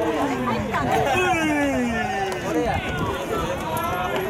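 Several voices at a baseball game calling out in long drawn-out shouts that overlap and slide down in pitch: players' or spectators' chatter during the pitch.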